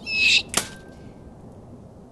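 Shovel blade striking a smashed laptop: a loud ringing hit at the start, then a second sharp hit about half a second later, after which the strikes stop.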